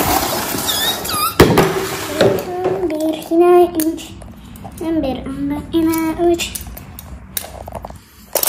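A child's voice making wordless, squeaky pitched sounds in two stretches, while plastic LEGO train track pieces are handled, with one sharp click about a second and a half in.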